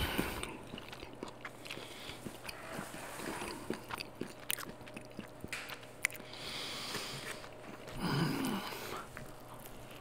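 Soft crackles and small clicks of a shrimp burger handled close to the microphone, then a louder bite into it near the end.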